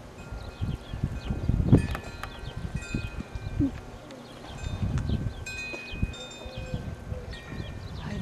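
Wind chimes ringing: several clear metallic tones struck at irregular moments and ringing on, over a low uneven rumble.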